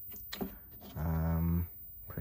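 A short, even-pitched held 'uhh' from a voice, lasting about half a second in the second half, after a few light clicks as a circuit board is handled.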